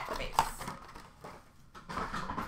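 Faint rustling of a trading-card pack wrapper and cards being handled.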